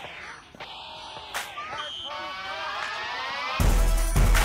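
Young children's voices shouting and calling during a tag rugby game. From about halfway a rising tone builds, and near the end a much louder, deep sound cuts in suddenly.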